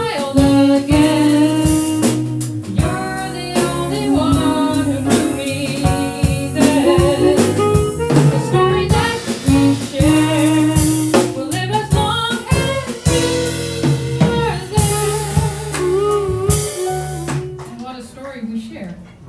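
Live jazz band playing: a harmonica melody over piano, bass, drums and percussion. The music drops away near the end.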